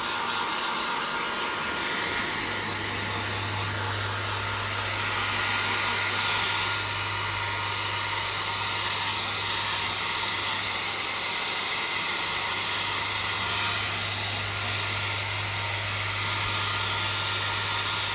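Small handheld hair dryer running continuously: a steady rush of air over a constant low motor hum, the tone of the rush shifting slightly a few times.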